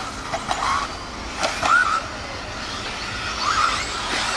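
Electric RC buggies' 13.5-turn brushless motors whining as they speed up through the section, the pitch rising about a second and a half in and again near the end, over a few sharp clicks.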